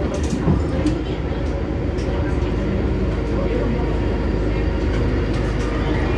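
MTR M-Train electric multiple unit running at speed, heard from inside the passenger car: a steady low rumble of wheels on rail with scattered short clicks.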